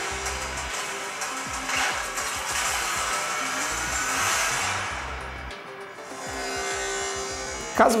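Movie trailer soundtrack playing on a smartphone: dramatic music with sound effects and a slowly rising whine around the middle, dipping briefly near six seconds.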